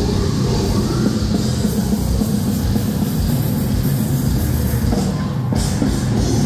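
Death metal band playing live through a festival PA, heard from the crowd: heavy distorted guitars over a pounding drum kit, with a brief drop in the sound about five seconds in.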